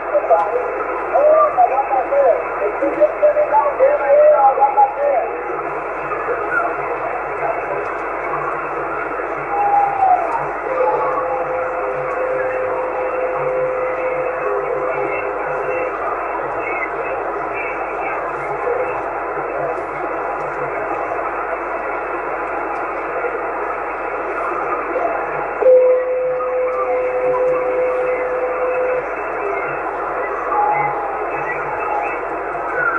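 Radio receiver audio from a Yaesu FT-450 transceiver on the 27 MHz CB band in sideband mode: steady thin static with weak, wavering distant voices in the first few seconds. A steady whistling tone comes through twice, each time for a few seconds, about a third of the way in and again near the end.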